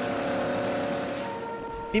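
Motorcycle engine of a tuk-tuk-style passenger trailer (a 'Tutu') running at steady speed, with the rush of road and wind noise heard from the passenger benches; the rush fades near the end.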